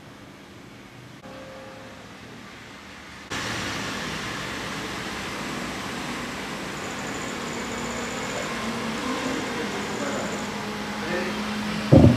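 Steady background noise that steps up suddenly in level about three seconds in, after a quieter stretch of room tone.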